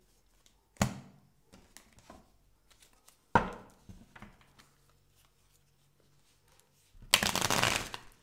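A deck of tarot cards being handled: two sharp clacks, about a second in and a little past three seconds, light card ticks between, then a dense shuffle lasting about a second near the end.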